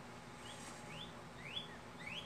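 A bird chirping faintly: a series of short, rising chirps about every half second.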